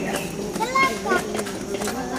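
A crowd of people chattering at once, with children's voices among them and a few sharp clicks.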